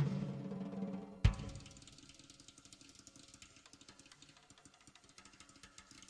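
Drum kit in a live drum solo: dense playing with sustained pitched notes ends in one loud accent about a second in, then quiet, rapid stick strokes continue.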